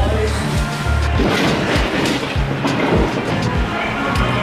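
Background music with a steady beat of low thumps, a little under two a second, over a held bass line.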